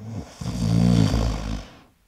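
A person snoring: one long snore that builds about half a second in and fades out after about a second.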